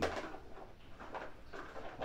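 A spoon stirring and scraping meat and onions in a plastic container: a sharp clack right at the start, then a few soft taps and scrapes.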